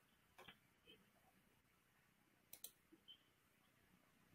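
Near silence: room tone with a handful of faint, short clicks, some in close pairs.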